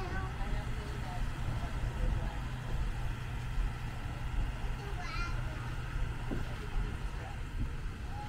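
The tram's towing truck running under load as it pulls the open-sided tram cars uphill: a steady low rumble. A brief high-pitched call is heard about five seconds in.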